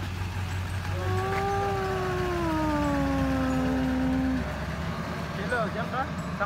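A woman's voice holding one long note for about three seconds, sliding slowly down in pitch like a drawn-out "ooh".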